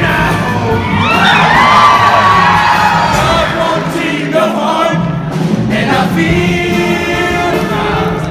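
All-male show choir singing a fast number to music, with cheering from the audience mixed in.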